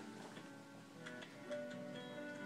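Faint music: a melody of held notes moving from pitch to pitch, with light clicks over it.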